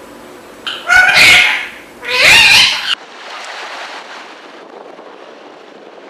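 Rose-ringed parakeet calling: two loud calls, each about a second long, that cut off suddenly about three seconds in, leaving a low steady background noise.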